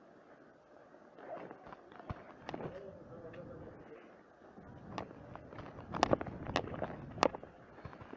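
Irregular sharp knocks and clatters, with three loud ones a little after halfway.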